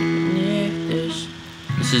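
Acoustic guitar with a capo: a D chord strummed once and left to ring, fading slowly. Another chord is struck near the end.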